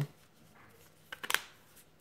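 Handling noise from a plastic smartphone being turned over in the hands, with a short cluster of sharp clicks a little over a second in.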